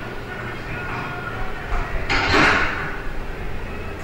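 Steady rumbling, rushing noise like a moving train, swelling louder about two seconds in, from a film soundtrack played over the room's speakers.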